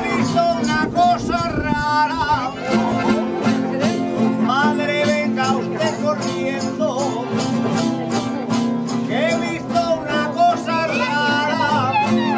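Aragonese jota sung by a solo voice in long, ornamented lines, over strummed guitars and an accordion keeping a steady rhythm.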